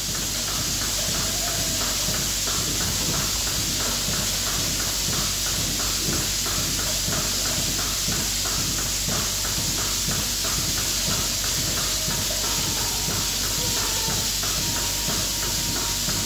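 Goat milking machine running: a steady hiss of air and vacuum with a rapid, regular ticking of the pulsators.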